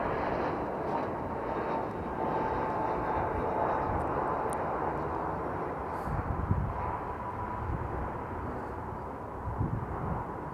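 Jet airliner flying low on landing approach: a steady engine rumble with a faint high whine running through it.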